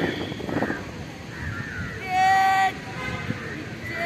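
A single loud, steady horn toot about two seconds in, lasting under a second, over a background of distant voices.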